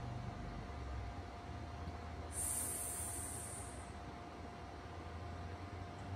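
Steady electrical hum and room noise with a constant mid-pitched tone, and a high hiss that lasts about a second and a half starting a little over two seconds in.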